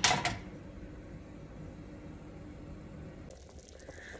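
Soup broth simmering and bubbling in a pot, with a brief splash of a spatula stirring the liquid at the very start.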